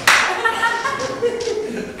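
A sharp hand clap right at the start, followed by a man's voice with a few lighter claps or slaps of the hands.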